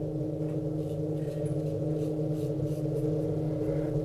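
A steady low hum made of several held tones, unchanging throughout.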